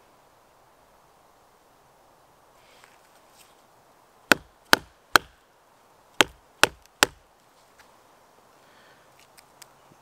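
A wooden baton knocking on the spine of a Morakniv Bushcraft Orange knife to drive the blade down through a dry stick and split it: six sharp knocks in two quick sets of three, starting about four seconds in.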